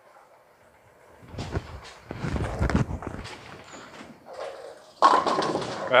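A bowling ball hitting the pins at the end of the lane, a loud crash and clatter of scattering pins starting about a second in and lasting about two seconds, leaving a few pins standing. Another loud burst of noise comes near the end.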